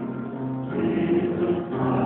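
Choir singing, holding long notes, with a short break in the sound near the end.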